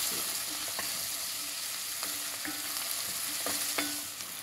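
Diced vegetables sautéing in butter in a pot, sizzling steadily, while a wooden spoon stirs them and gives several light scrapes and knocks against the pot.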